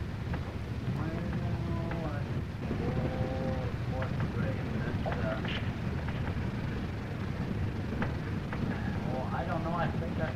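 Faint, indistinct voices talking at intervals over a steady low rumble and hiss.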